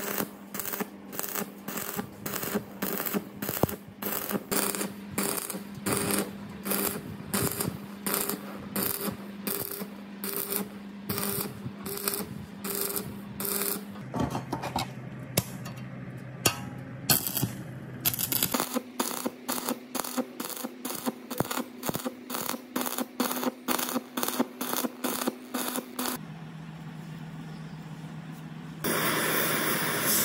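Stick arc welding on steel: the arc crackles in short bursts about twice a second over a steady hum from the welding machine. About a second before the end an oxy-acetylene torch flame starts with a loud steady hiss.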